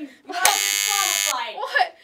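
A game-show buzzer sounds once: a loud, flat buzz just under a second long that starts and stops sharply, marking a ruling against a player in the game.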